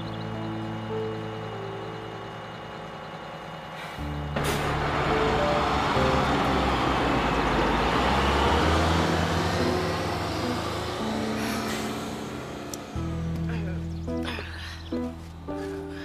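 Background music score of sustained synth notes. From about four seconds in, a bus's engine and road noise rise into a loud rush as it pulls away, then fade by about twelve seconds.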